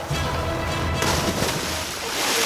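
Background music with a steady bass line. About a second in, a person hits deep water after a jump from a rock ledge, and the splash goes on to the end.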